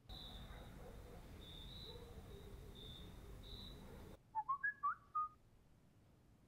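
Smartphone notification alert: a short run of chirpy, whistle-like gliding notes about four seconds in, lasting about a second. Before it, a faint hiss with a thin, high tone that comes and goes.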